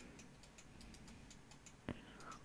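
Near silence with faint, light ticks, and a single sharper click near the end, a computer mouse click.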